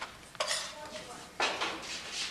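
Dishes clinking: two sharp clattering sounds about a second apart, the first with a brief ringing.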